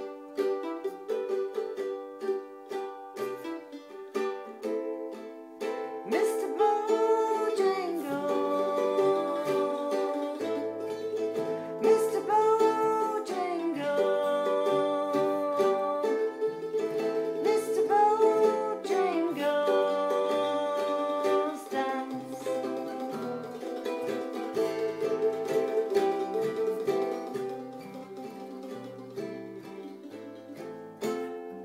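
A small acoustic band playing an instrumental break between sung verses: plucked strings keep the accompaniment going while a lead melody line slides up and down in pitch several times.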